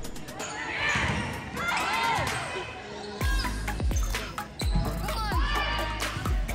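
Athletic shoes squeaking on a hardwood gym floor as volleyball players move, mixed with sharp hits and voices in the gym. Music with a deep bass beat comes in about three seconds in.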